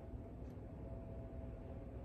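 Quiet room tone: low background noise with a faint steady hum, and no distinct sound event.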